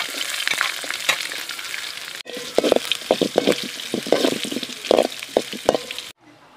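Chopped onion and dried red chillies sizzling in hot oil in a metal pan, then stirred with a steel spoon that scrapes and knocks against the pan in irregular strokes over the second half. The sizzle breaks off for a moment about two seconds in.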